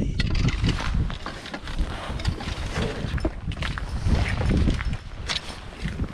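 Wind rumbling on the microphone, with irregular clicks, knocks and rustles of fishing gear being handled in an open car boot.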